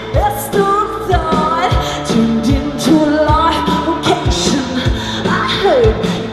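A live rock band playing loudly through a stage PA: a woman's sung lead vocal gliding over a steady kick-drum beat, bass, guitar and cymbals.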